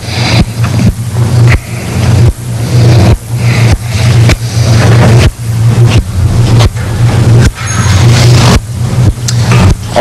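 Loud steady low hum with a rough rushing noise over it, dipping briefly many times in an uneven pattern.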